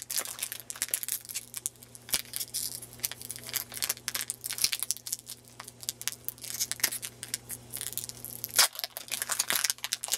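Foil Pokémon booster-pack wrapper crinkling and tearing as it is peeled open by hand. It makes a dense run of sharp crackles, with the loudest tear near the end.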